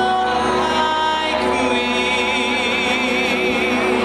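Live singing into handheld microphones, amplified in a hall; about a second and a half in the voice settles into a long held note with vibrato.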